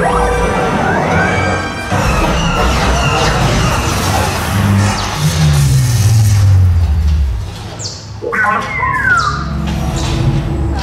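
Ride soundtrack music mixed with sci-fi sound effects. Sweeping tones rise about a second in, and a deep tone falls from about five to seven seconds. The sound dips briefly near eight seconds, then a high falling whine comes in.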